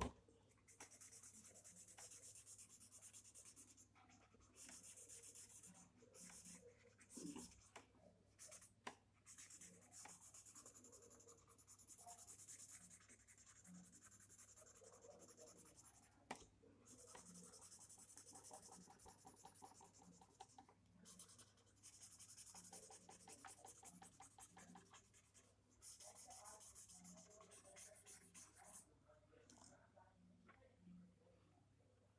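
Pencil shading on sketchbook paper: faint scratchy strokes in runs of one to three seconds, separated by short pauses.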